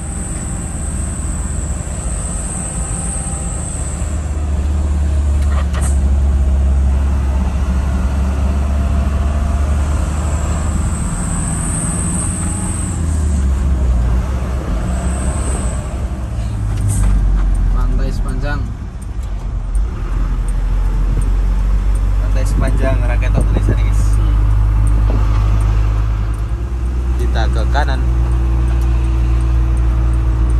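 Steady low drone of a truck's engine and road noise heard inside the cab while driving, its note shifting twice around the middle, with indistinct voices over it.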